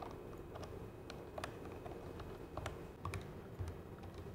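Typing on the keyboard of an Ultratec text telephone: a run of light, irregularly spaced key clicks.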